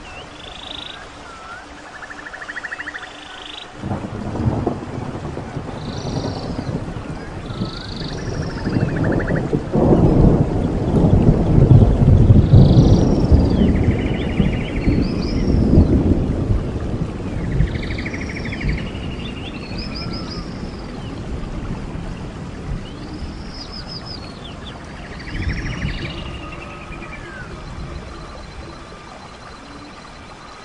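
A long roll of thunder that builds from about four seconds in, is loudest in the middle and slowly fades out, over a steady hiss of rain. Birds give short, repeated whistled calls and trills throughout.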